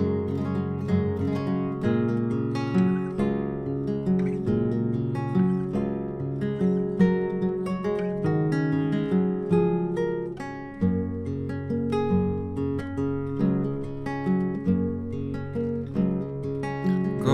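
Instrumental passage of solo acoustic guitar: a continuous run of plucked notes over a shifting bass line.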